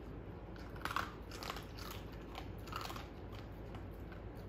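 A dog chewing something crunchy, in irregular crunches, the loudest about a second in.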